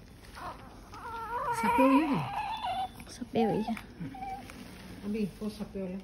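Newborn baby crying in short, wavering wails, the loudest about two seconds in, fading to fainter whimpers.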